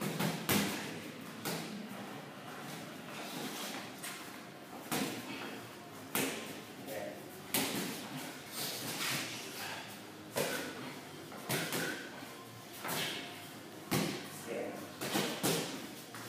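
Boxing gloves landing punches and blocks in sparring: a string of sharp, irregular thuds, roughly one every second or so, echoing slightly in a large room.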